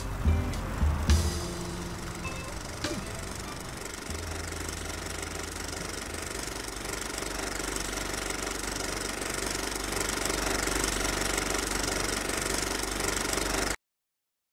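Background music of sustained tones, with a few low thumps near the start, slowly swelling before it cuts off abruptly just before the end.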